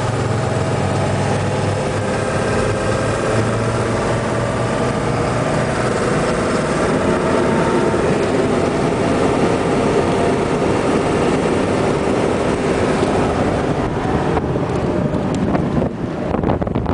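Steady engine and road noise heard from inside the cab of an armoured military vehicle on the move, with a low hum early on and the noise growing a little louder in the second half.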